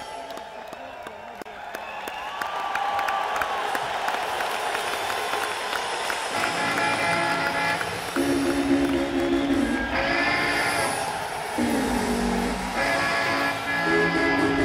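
Crowd cheering and applauding while an electric guitar plays soft gliding notes; from about six seconds in, sustained Stratocaster chords ring out over a low bass, getting louder.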